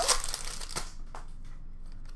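Foil wrapper of an Upper Deck Series 1 hockey retail pack crinkling and tearing in the hands. It is loudest in the first second, then gives way to softer rustles of the cards being handled.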